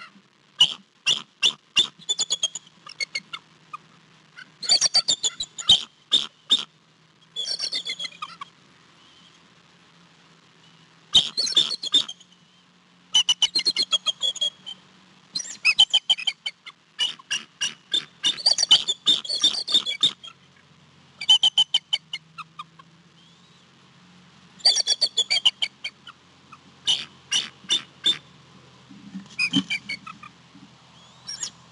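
Bald eagle giving repeated chattering calls: bursts of rapid, high, piping notes about a second or two long, coming every couple of seconds, with a few longer pauses.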